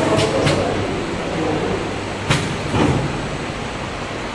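Steady hum of running machinery, with one sharp click a little over halfway through.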